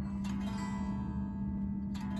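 Electric guitar chord, a stretched major-seven sus voicing, ringing out steadily as the fretted shape is held.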